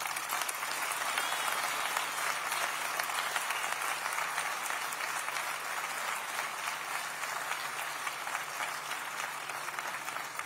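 A large crowd applauding steadily, sustained clapping that eases slightly toward the end.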